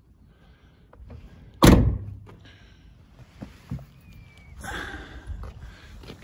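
A Porsche 911 (996) cabriolet door being shut: one solid thunk about two seconds in, followed by fainter rustling.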